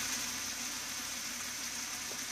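Chicken pieces frying in vegetable oil in a hot skillet, a steady sizzle as the chicken finishes cooking.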